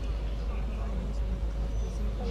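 Outdoor ambience between spoken phrases: a steady low rumble with faint, indistinct distant voices.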